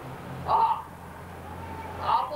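A man's single short, loud, raspy exclamation about half a second in, over a steady low electrical hum.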